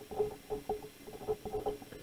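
Felt-tip marker squeaking on paper in short strokes while a word is written by hand.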